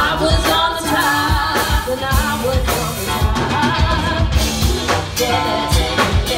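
Live funk band playing: a female lead singer over electric guitars, bass and a drum kit keeping a steady beat.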